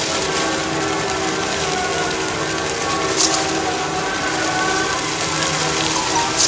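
Large brush-and-wood bonfire burning in the rain: a steady hiss of flames and falling rain, with a brief sharp crackle about three seconds in.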